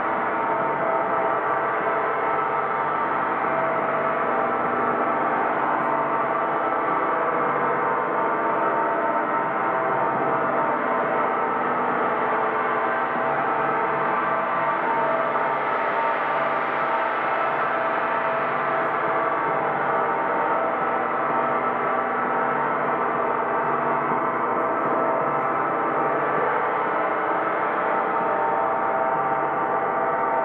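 Large gong played continuously with two soft felt mallets, giving a dense, steady wash of many overlapping ringing tones at an even volume, with no single strike standing out.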